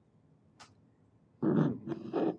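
A faint click, then near the end a man's wordless throaty vocal sound in two short parts.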